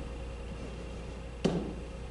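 Steady low room hum, with a single sharp tap about one and a half seconds in: a stylus pen striking the interactive whiteboard as a point is plotted.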